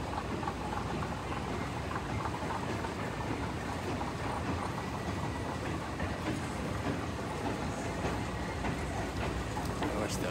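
Steady rumble and rattle of an airport moving walkway running, heard close by within the general din of a busy concourse.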